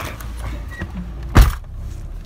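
A pickup truck door slams shut once, a sharp loud knock about two-thirds of the way through, over a steady low rumble.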